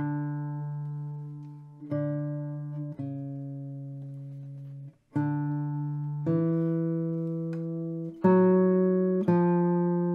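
Solo classical guitar playing a slow run of full chords, a new one struck every one to two seconds and left to ring and fade before the next; the loudest comes near the end.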